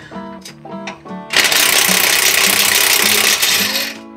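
Impact wrench running in one continuous burst of about two and a half seconds, starting a little over a second in, on a bolt under the truck that turns but will not back out.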